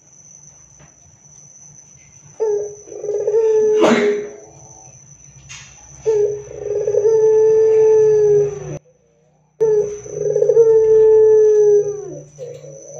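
Ringneck (Barbary) dove cooing loudly: three long coos, each opening with a short rolling burr and then held, falling slightly at the end. A sharp click sounds during the first coo.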